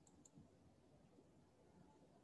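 Near silence: faint room tone, with two brief, faint clicks near the start.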